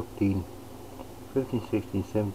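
A man's low, droning voice muttering a few short syllables under his breath, in two brief bursts, counting as he goes.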